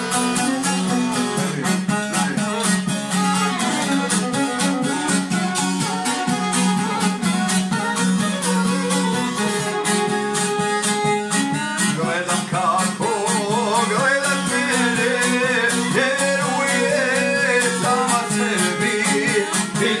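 Traditional Bosnian folk duo of šargija and violin playing an instrumental passage: fast plucked strumming over a steady drone, with the melody turning wavering, with vibrato, about halfway through.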